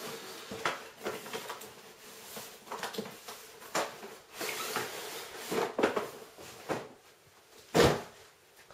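Cardboard motherboard packaging being handled: the inner box is pulled out of its outer cardboard sleeve with scattered rustles, scrapes and knocks. A loud thump near the end as the box is set down on a wooden desk.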